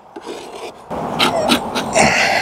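A metal hive tool scraping wax buildup off the wooden rim and top bars of a beehive box. It makes rough, rasping strokes that start about a second in.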